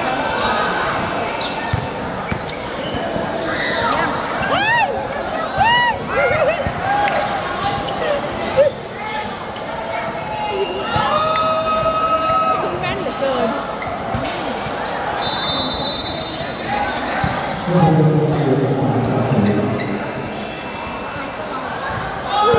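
Live basketball game sounds: a basketball bouncing and knocking on the court amid players' and onlookers' shouts, with a few short squeaks.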